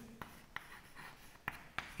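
Chalk writing on a chalkboard: a few faint, short taps and scratches as the chalk strikes and drags across the board.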